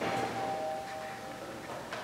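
Small wooden cabinet doors of a tabernacle being handled and swung shut: a soft knock, then a faint steady ringing tone that lasts about a second and a half.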